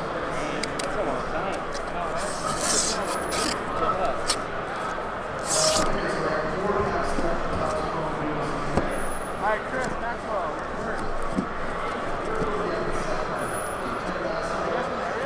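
Continuous background crowd chatter. Over it come a few small clicks and two short, loud tearing sounds a few seconds apart as a cardboard shipping case is cut and pulled open.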